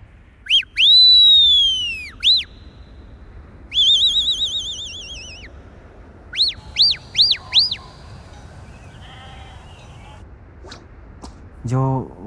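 Herder whistling shrilly through his fingers to his flock. He gives a long arching whistle with a short one either side, then a warbling trill, then four quick rising-and-falling whistles.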